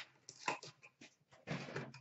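Faint handling noise: a few short, separate clicks and scrapes, the clearest about half a second in and another just before the end.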